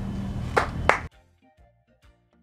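Outdoor background noise with a steady low hum and two sharp impacts about a third of a second apart, the second one louder. About a second in, the sound cuts off abruptly to faint music.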